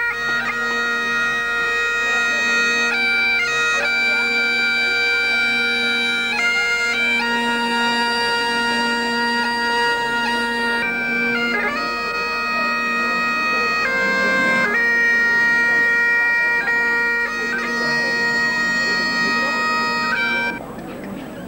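Great Highland bagpipes playing a tune: the drones hold one steady low note under a chanter melody that steps between held notes. The music starts and stops abruptly.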